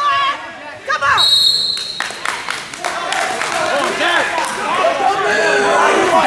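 A referee's whistle: one short, steady, high blast about a second in, stopping the wrestling bout. Spectators' voices run throughout, and dull knocks follow from about two seconds in.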